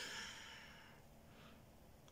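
Near silence: room tone with a faint breath.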